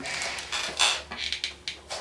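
Handling noise from an electric guitar being shifted on the lap: a string of short scrapes and taps of hands rubbing and knocking on the guitar body, over a steady low hum.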